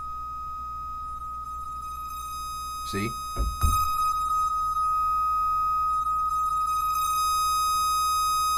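Waldorf Blofeld synthesizer holding a steady high-pitched tone with bright overtones. About three and a half seconds in there is a short knock, and from then on the tone is louder and brighter.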